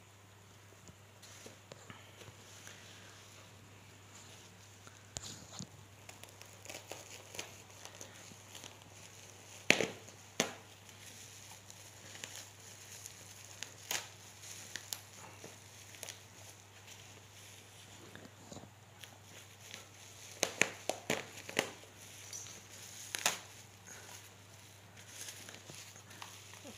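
Taped black plastic parcel wrapping being handled and torn open by hand: sporadic crinkles and tearing, sharpest about ten seconds in, with a quick run of them in the last third.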